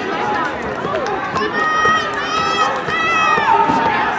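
Spectators cheering runners on, many voices overlapping. About halfway through, one high voice stands out with two long, drawn-out shouts.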